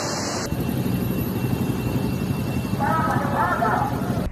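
A steady rush of floodwater and rain running across a street, recorded on a phone. A person's voice is heard briefly near the end.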